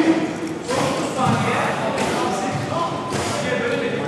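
People talking in a large, echoing studio hall, with a few dull thuds.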